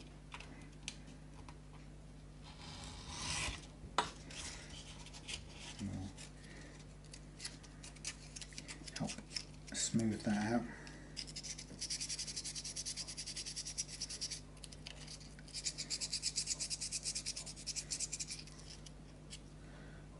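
Small grub screws rubbed back and forth by hand on sandpaper to grind their ends flat: two spells of quick, even sanding strokes, several a second, in the second half, with a few light clicks and handling knocks before them.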